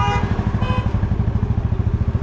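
Motorcycle engine idling close by, a fast, even thumping.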